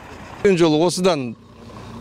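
A voice speaking a short phrase, lasting under a second, over steady low background noise.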